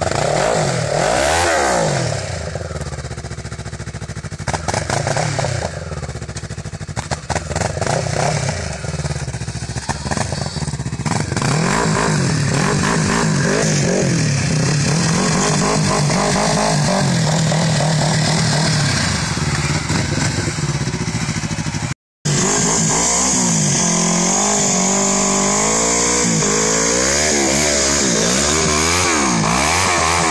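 Yamaha Phazer MTX snowmobile's four-stroke twin, breathing through an aftermarket MBRP exhaust, revving up and down over and over as the sled struggles to climb a hill with too little snow. The sound drops out briefly about two-thirds of the way through.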